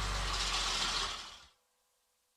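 Sound effect of a cartoon bus driving off: a rattling mechanical rumble that fades out about a second and a half in.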